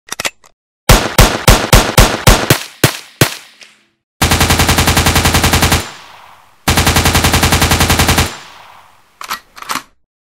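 Gunfire: about ten single shots a quarter second apart, then two long bursts of rapid automatic fire, each dying away with an echoing tail, and a few more shots near the end.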